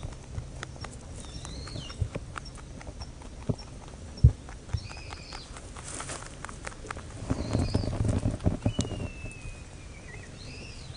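Rabbits chewing dry hay from a plastic tray: a run of short, crisp crunching clicks with hay rustling, and one sharper knock about four seconds in. Near the end comes a louder stretch of rustling in the hay.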